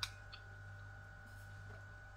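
A person chewing a mouthful of food with the mouth closed, faint under a steady low electrical hum, with a small click at the very start as the fork leaves the mouth.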